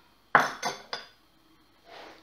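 Three quick clinks of a utensil or small cup against a glass mixing bowl, about a third of a second apart, the first the loudest.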